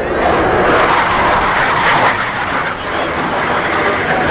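Loud, steady jet-engine noise from a Blue Angels F/A-18 Hornet's twin turbofans as the jet flies past.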